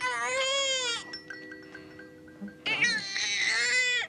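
Young baby crying: two wavering wails, each about a second long, with a pause of well over a second between them and faint steady tones in the gap.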